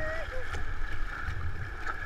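River whitewater rushing and splashing around a stand-up paddleboard, with wind rumbling on the microphone. A person's drawn-out call trails off just after the start.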